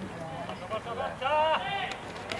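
Indistinct voices of people near the microphone, with one voice rising in a brief call about a second and a half in.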